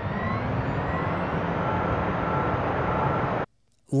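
Sound effect of a car accelerating: a rising engine note that grows steadily louder for about three and a half seconds, then cuts off suddenly.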